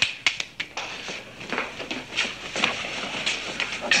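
A man clapping his hands several quick times in about the first second, urging someone to hurry off. After that come softer, indistinct noises of movement.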